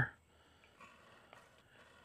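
Near silence: faint room tone with two faint soft clicks, one a little under a second in and one about half a second later.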